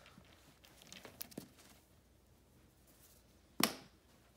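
Faint rustling and light clicks of a cotton-like rope being wrapped around a wooden pole for a round lashing, with one short, sharp knock near the end.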